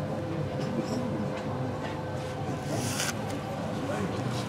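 Low room noise at a lull: a steady faint hum with indistinct background murmur, a few small clicks, and a brief rustle about three seconds in.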